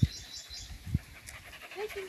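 A dog making a short, wavering whimper near the end, with two dull thumps about a second apart before it.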